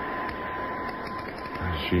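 Steady background hiss with a constant thin high-pitched tone, with no clicks or other events, then a man's voice begins near the end.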